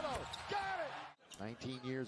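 Basketball being dribbled on a hardwood arena court under broadcast commentary, with a sudden brief dropout about halfway through.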